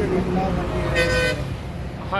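A vehicle horn toots once, briefly, about a second in, over street background and voices.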